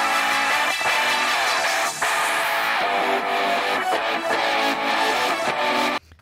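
The 'other instruments' stem separated from a pop song by iZotope RX 11's stem split playing back: electric guitars and synth without the vocals, bass and drums. The music cuts off suddenly at the end.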